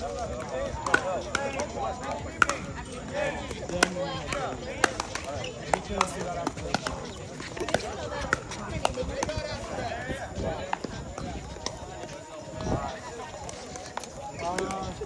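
Pickleball rally: paddles hitting the hollow plastic ball back and forth in sharp pops, roughly once a second, with people talking in the background.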